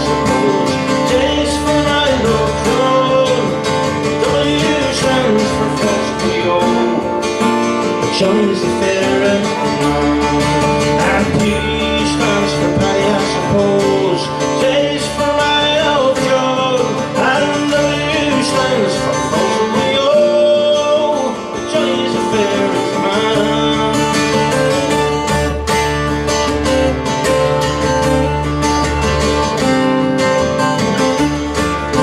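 Two steel-string acoustic guitars playing an instrumental break between verses of a song, a picked melody over a strummed and picked accompaniment.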